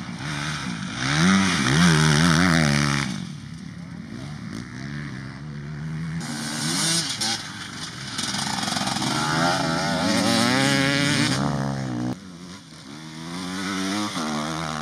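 Enduro dirt-bike engines revving hard, the pitch climbing and dropping again and again as the riders accelerate and shift. It is loud in the first three seconds, quieter for a few seconds, then loud again from about six seconds until it drops off sharply at about twelve seconds.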